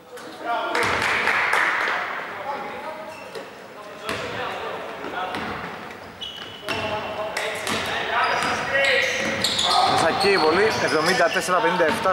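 Basketball game play in a large, echoing, near-empty hall: the ball bouncing on the hardwood court, with players' voices calling out. Wavy, high-pitched squeals join in during the last few seconds.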